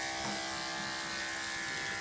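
Corded electric dog-grooming clippers running with a steady buzz as they are drawn through a dog's coat, shaving it short.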